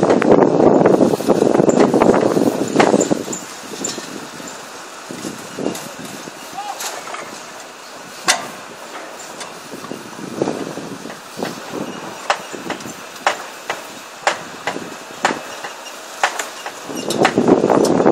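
Strand pusher machine running and feeding steel prestressing strand, a loud dense rattle, for about the first three seconds and again from about a second before the end. Between those stretches it is quieter, with sharp metallic clicks and knocks, several of them about a second apart.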